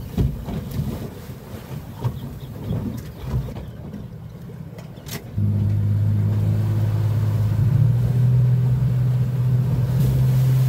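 Boat's Suzuki outboard motor throttled up about halfway through, jumping suddenly from uneven low noise to a loud, steady drone that steps up a little in pitch a couple of seconds later as the boat gets under way. A sharp click comes just before the throttle-up.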